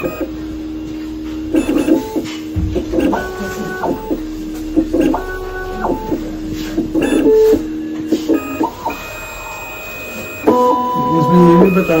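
CEREC Primemill dental milling machine milling a tooth crown from a block. Its motors whine in held tones that step up and down in pitch every second or two.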